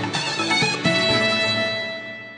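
Television quiz-show theme music: a quick run of notes settling, under a second in, into a long held final chord that begins to fade.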